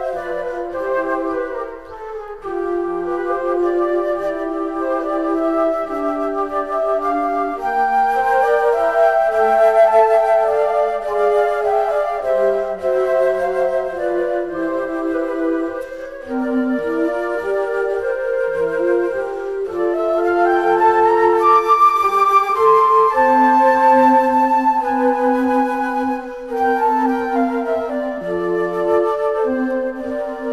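Jazz waltz recording: a concert flute plays the melody over double bass, piano and light drums.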